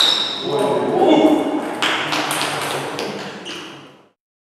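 Table tennis ball struck by bats faced with SPINLORD Irbis II max rubber and bouncing on the table during a rally: sharp pings ringing in a large hall. A voice is heard briefly about half a second in, and the sound fades out near the end.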